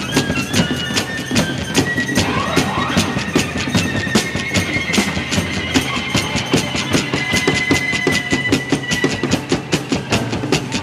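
Live country-rock band playing an instrumental passage: steady drum kit beat under strummed guitars, with a long held, sliding lead line on top.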